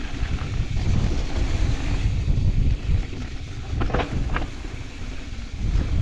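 Wind buffeting the action-camera microphone over the rumble of a Commencal Clash mountain bike's tyres rolling fast down a loose gravel trail. A few sharp clatters, typical of chain and frame rattle over rough ground, come about four seconds in.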